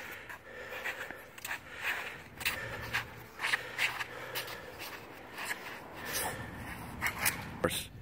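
Irregular short swishes and scuffs, roughly one a second, from a person moving through double-knife drills on a hard court surface.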